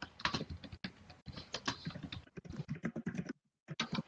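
Computer keyboard typing: rapid, irregular key clicks, with a brief pause near the end.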